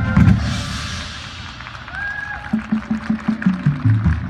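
High school marching band playing: a loud ensemble hit with a cymbal crash that fades over the first second, a short held high note about two seconds in, then the drumline's pitched bass drums playing a quick rhythmic run of low strokes.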